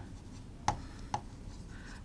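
A pen writing on a smooth board: faint rubbing strokes with three short taps as the tip meets the surface.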